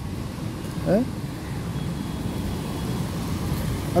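Steady low rumble of city road traffic on a rain-wet road.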